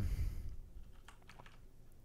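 Quiet room tone with a few faint clicks at a computer, a cluster about a second in and one more near the end.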